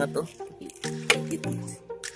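Background music with sustained low notes, with brief splashing of water as a hand stirs a plastic tub of water.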